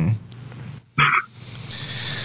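A man's laugh trailing off with falling pitch, then another short vocal burst about a second in, and a breathy hiss near the end.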